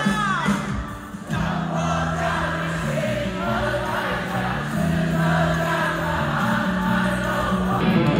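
Concert crowd singing along in unison with a live rock band at an outdoor concert, the lead singer's voice among them.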